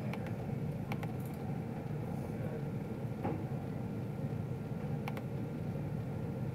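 Steady low room hum with three faint, separate clicks spread through it.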